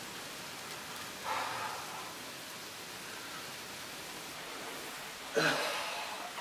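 Steady hiss of a home camcorder's built-in microphone in a small room, with a short breathy rustle about a second in. A voice starts near the end.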